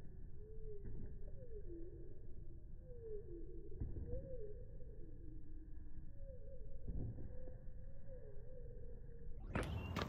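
Slowed-down, pitched-down sound from slow-motion footage: a low muddy rumble with slow gliding tones that rise and fall, and a few dull thuds of a jogger's footfalls on stone pavers. Just before the end it switches to normal-speed sound.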